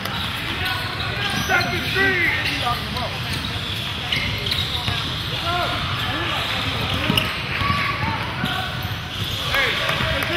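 Basketball game on a hardwood gym floor: a ball bouncing, sneakers squeaking in short chirps, and players' and spectators' indistinct voices echoing in the hall.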